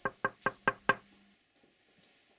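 A rapid series of knocks on a door, about four or five a second, growing louder and then stopping about a second in.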